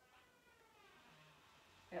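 A pet's faint, high cry, falling in pitch over about a second.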